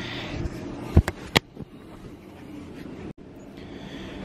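Handheld camera being carried and handled: a rustle, then two sharp knocks about a second in, over a steady low hum.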